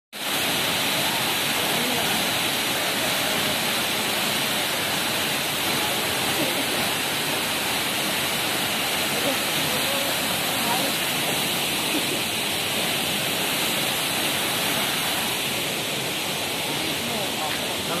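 Steady rush of a tall waterfall, two streams of water plunging into a pool below.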